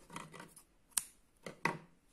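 Hands handling and pulling cotton crochet yarn, with soft rustles and a single sharp click about a second in.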